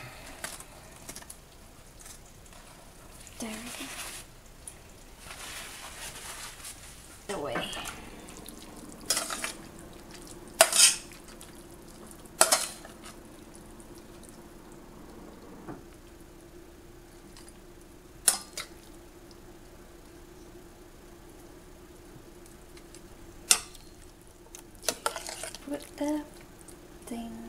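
A metal spoon clinking against a stainless steel pan and a ceramic plate as sauce and vegetables are spooned out, about half a dozen sharp clinks spread a few seconds apart. Paper towel rustles in the first few seconds, and a faint steady hum sets in about a third of the way through.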